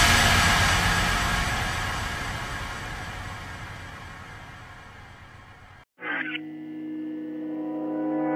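Background music. The last chord of an electronic drum-and-bass track dies away slowly over about six seconds, then breaks off. After a short silence a new track starts with held, sustained chords.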